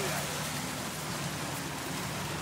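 Jeep driving slowly through a muddy water hole: a steady hiss of water and mud churned by the tyres over a low, even engine hum.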